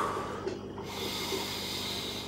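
Quiet room tone with faint breathing close to the microphone.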